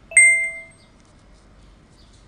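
A single bright bell-like ding, a notification chime sound effect, struck just after the start and fading away within about half a second.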